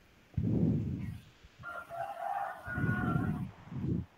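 A rooster crowing once in the background, a long call of nearly two seconds starting about one and a half seconds in, picked up by a participant's microphone on a video call. Three low, muffled bursts of noise, the loudest about half a second in, come through the same microphone.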